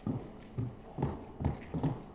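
Footsteps of a person walking across a stage at a brisk pace, five distinct steps about two and a half a second.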